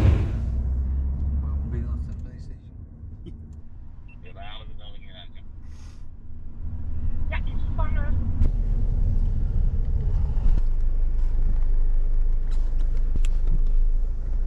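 Low, steady rumble of a police patrol car on the move, heard from inside the cabin; it drops back for a few seconds and grows louder again about seven seconds in. Faint short bits of voices come through.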